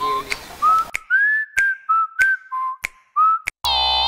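Whistling: a short tune of about eight high notes with small upward slides, each note broken off by a sharp click. A brief buzzy tone sounds near the end.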